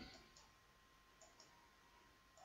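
Near silence: faint room tone with a few very faint clicks.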